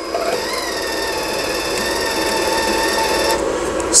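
Wire feed motor of a YesWelder Flux 135 welder running while the gun trigger is held, pushing flux core wire out through the gun at a drive-roll tension that is still a little loose. A steady whine that rises slightly about half a second in and cuts off suddenly a little after three seconds in.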